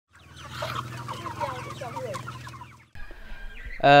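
A flock of young free-range chickens, about two months old, peeping and clucking in many short overlapping calls over a steady low hum. The sound cuts off about three seconds in, and a man's voice begins just at the end.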